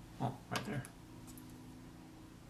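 Two short, wordless grunts from a man working close over small clay pieces, the first about a quarter second in and the second just after half a second.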